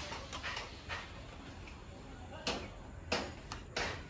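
Faint scuffs and a handful of light clicks and taps as a rider gets off a parked, switched-off motorcycle onto gravel, over a low steady hum.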